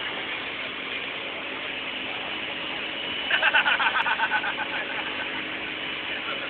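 A crane's engine running steadily under general outdoor noise. About three seconds in, a rapid pulsing pitched sound lasts just over a second.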